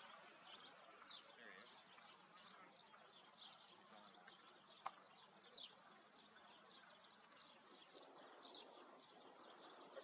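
Faint outdoor quiet with small birds chirping, many short high chirps scattered throughout; a single sharp click about five seconds in.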